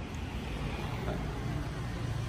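Steady low rumble with an even hiss over it: outdoor background noise.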